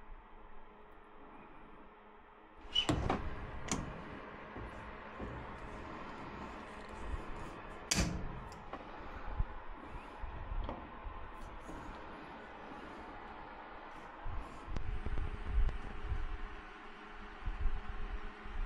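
Handling clatter and a few sharp knocks as a PVC male adapter on an air handler's condensate drain is worked with tongue-and-groove pliers, the loudest knock about eight seconds in. A faint steady hum runs underneath.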